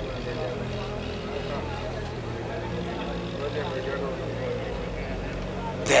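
Crane engine running at a steady low hum while a stop log is lowered into a dam's diversion gate.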